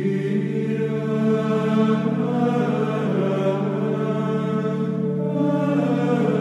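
Background music: slow chanting voices holding long notes over a steady low drone.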